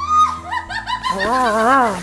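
A cartoon Gollum's voice making a quick run of rising-and-falling cooing, gurgling sounds, about four a second, over a quiet music bed.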